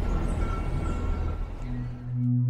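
Outdoor street background noise, a steady hiss and rumble with no clear single source. Background music with sustained tones fades in near the end.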